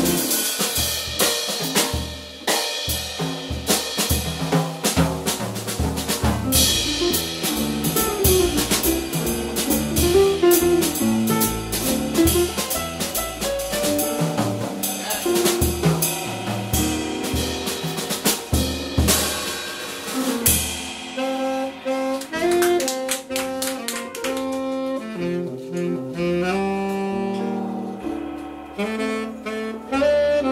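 Live small-group jazz: a tenor saxophone solos over upright bass and drum kit with busy cymbal work. About two-thirds of the way through, the drums thin out and the saxophone line carries on more sparsely.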